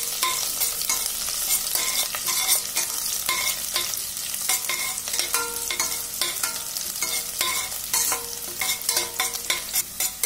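Sliced onions and whole spices frying in oil in a stainless steel pressure cooker, sizzling steadily, while a metal spatula stirs and scrapes against the pot in repeated strokes, some ringing briefly off the steel.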